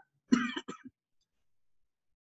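A man clearing his throat once, a short rough burst about a third of a second in, ending in a few small clicks, then silence.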